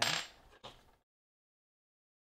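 A small hard object clattering on a desk, twice, about half a second apart.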